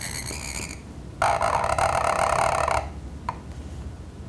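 Calligraphy pen nib scratching across paper: a short, faint scratch, then a longer, louder, buzzing rasp of about a second and a half as a long ink stroke is drawn, followed by a light tap of the pen.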